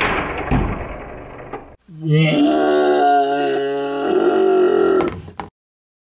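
A sudden burst of noise that fades away within about two seconds, as the Nerf Dual Strike blaster fires. Then comes a long, drawn-out groan held for about three and a half seconds, which cuts off abruptly.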